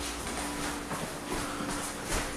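Indistinct movement noise of people hurrying into a small room: footsteps and the rustle of a handheld camera being carried, with a faint steady hum underneath.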